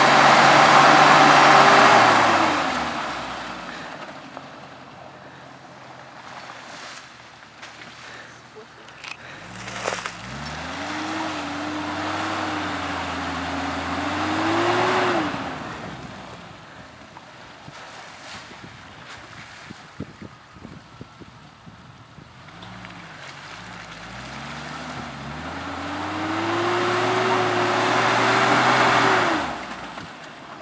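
A lifted Jeep Cherokee XJ's engine revving hard in three long bursts as it tries to climb a steep, muddy hill. Each time the revs rise and hold for a few seconds with the wheels churning in the mud, then drop back to a low idle. The last burst cuts off abruptly near the end: the climb is failing.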